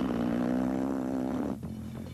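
A single held low, brassy tone, drifting slightly down in pitch for about a second and a half before it stops.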